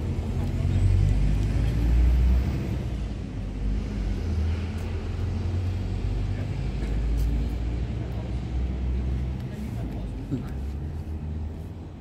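Motor vehicle engine running close by, a low rumble with a steady hum, louder in the first few seconds and again through the middle, then fading near the end, over road traffic noise.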